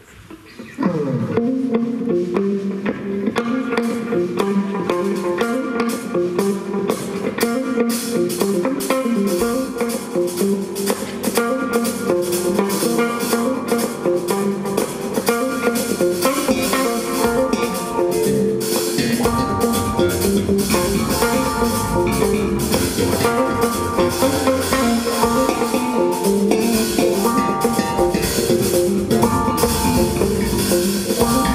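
A jazz quartet starts a tune about a second in: a hollow-body electric guitar plays the melodic line over keyboard, electric bass and a drum kit. The drums and cymbals come in more fully a few seconds later, and the bass gets deeper about two-thirds of the way through.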